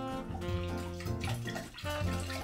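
Wire whisk stirring a thin, milky liquid in a glass bowl, sloshing and splashing, over background music.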